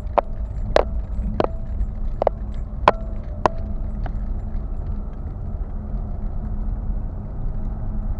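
Car interior rumble while driving slowly over a rough, broken road surface, with about seven sharp clicks and knocks in the first half, some with a short ringing tone, as the car jolts over bumps; after that only the steady rumble.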